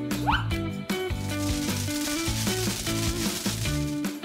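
Background music with a steady beat. From about a second in, a continuous sizzling hiss runs under it: a welding-torch sound effect.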